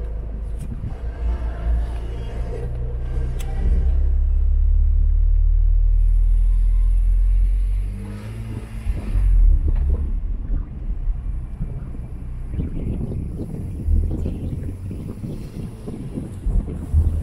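Car engine and road rumble from a car driving off, a steady low drone that is loudest for a few seconds and eases about eight seconds in. From about twelve seconds in, wind buffets the microphone.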